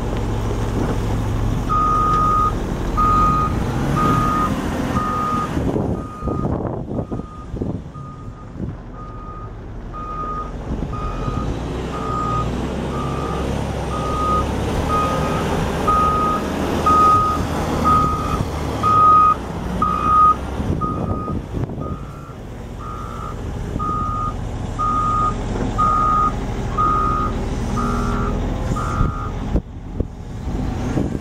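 Caterpillar 980K wheel loader's backup alarm sounding evenly spaced single-pitch beeps, starting about two seconds in and stopping just before the end, while the loader reverses. Under it the loader's Caterpillar C13 ACERT diesel engine runs steadily.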